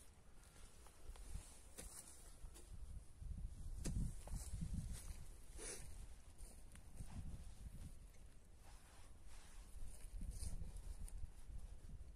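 Gloved hands scooping and crumbling soil in a planting hole: faint rustling and soft thuds, with a few sharper clicks.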